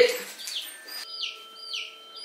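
A bird chirping: short, high, falling chirps repeated several times in quick succession.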